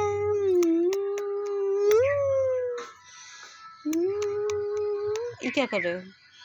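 A baby's long, drawn-out cooing 'ooo' sounds: one held note of nearly three seconds, a short pause, a second held note, then a quick falling wail near the end.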